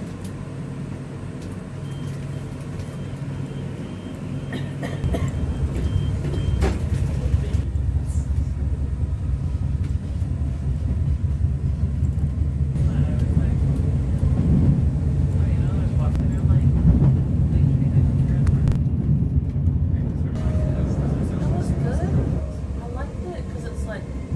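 Cabin noise of a moving electric commuter train: a steady rumble of wheels on track with a low hum, getting louder about five seconds in.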